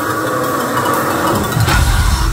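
Live metalcore band: a sustained, held guitar chord ringing with the bass and drums dropped out, then the full band crashing back in with a hit near the end.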